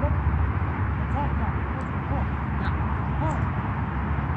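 Outdoor background on an open field: a steady low rumble with faint, far-off voices calling now and then.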